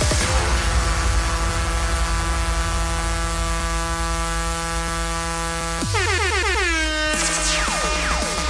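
Electronic music played over a large outdoor PA speaker system: a sustained, horn-like synth chord held over a steady bass, which about six seconds in breaks into falling pitch sweeps.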